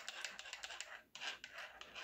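Losi DBXL-E's front differential turned by hand through its driveshaft: faint, rapid clicking of the gears at about ten clicks a second, with a short pause about a second in. Somewhat quiet, which the owner takes to mean the front diff is in good shape.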